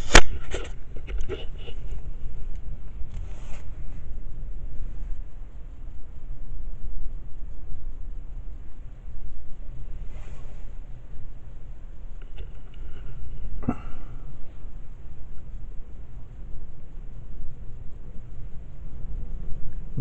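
Gusty wind buffeting the car and the microphone, a low rumble that swells and fades. A sharp handling knock comes right at the start as the camera is turned around, with a few faint scrapes later.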